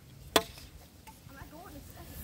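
A single sharp knock about a third of a second in, then faint distant voices.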